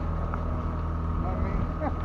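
A boat's engine running steadily at idle, a low even hum, with faint voices in the background near the end.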